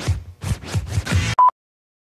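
Record-scratch sound effect: a quick run of about six back-and-forth scratch strokes, ending in a short, loud single-pitch beep, after which the sound cuts off suddenly.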